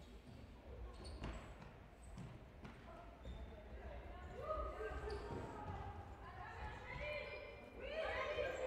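Futsal match sounds on an indoor wooden court: a few sharp knocks of the ball being kicked, about a second in and again a second and a half later, then faint players' calls in the second half.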